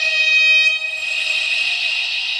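Trumpet holding one steady high note in an improvised piece with electronics. About a second in, the clear note thins into an airy, hissing tone that slowly fades.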